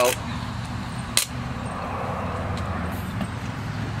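Steady low rumble of distant road traffic, with one sharp click about a second in.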